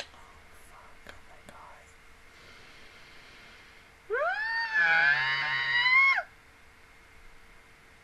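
A woman's high-pitched distressed squeal, about two seconds long, starting about four seconds in. It rises sharply at the onset, then wavers.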